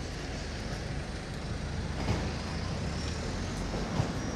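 Steady low rumble of a motor vehicle engine in a city street, with a light click about two seconds in.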